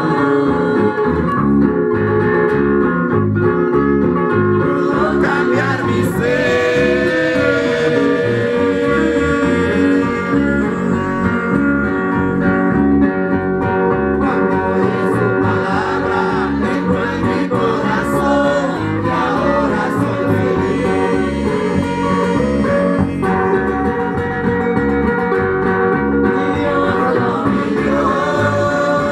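A congregation singing a hymn in Spanish, accompanied by guitar and bass guitar with a steady beat.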